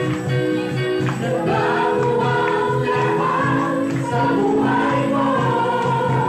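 Women's gospel choir singing a worship song into microphones over instrumental accompaniment with a steady bass beat; the voices swell in about a second in.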